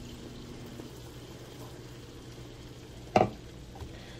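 Broth poured from a plastic measuring jug into a rice cooker pot of dry yellow rice: a soft, steady pour. A brief thump about three seconds in.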